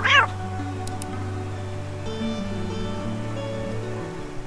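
A short cat meow right at the start, over background music with long held notes; two faint clicks about a second in.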